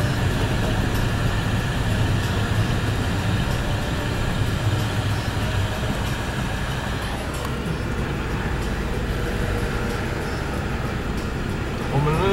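Engine and tyre noise of a moving car heard from inside the cabin: a steady low drone.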